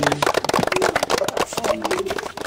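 Close rustling and crackling handling noise: many sharp irregular clicks a second, loud and close to the microphone.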